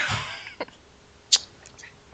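A person's laugh trailing off in a breathy exhale over a call line, followed by a single sharp click a little over a second in.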